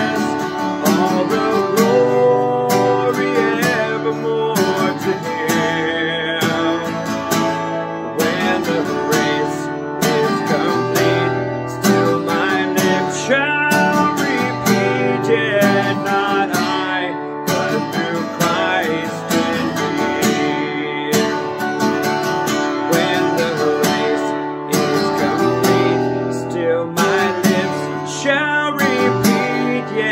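Seagull cutaway acoustic guitar strummed in a steady rhythm, chords in the key of D.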